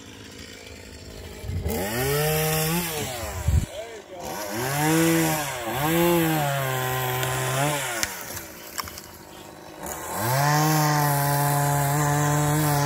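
Two-stroke chainsaw up in a pine tree, revved up and down in several short bursts, dropping to a lower level for a couple of seconds, then held at high revs while cutting near the end. A single thump about three and a half seconds in.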